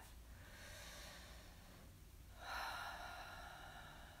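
A woman taking a slow deep breath: a soft breath in, then a louder breath out starting about two and a half seconds in and trailing off.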